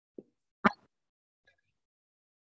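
Two brief pops about half a second apart, the second louder and sharper, then a faint tick.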